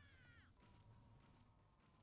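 Near silence, with a faint falling pitched sound in the first half second, then a faint steady tone.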